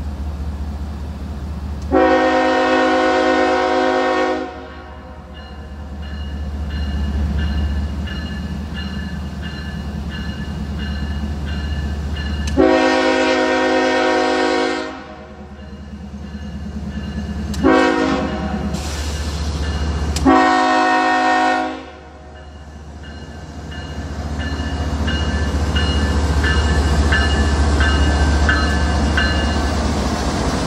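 Norfolk Southern ES44AC diesel locomotive sounding its multi-chime air horn in the grade-crossing pattern: long, long, short, long. Under the horn the locomotive's low rumble grows louder as it nears and passes near the end.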